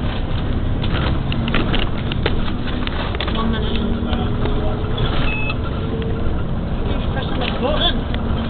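Inside a moving bus: steady engine hum and road noise, with a few sharp rattles and knocks in the first couple of seconds.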